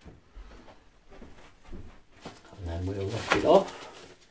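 Bubble wrap crinkling with light knocks as a bubble-wrapped parcel is handled and set down on digital bathroom scales. About three seconds in, a man makes a short wordless hummed sound, the loudest thing heard.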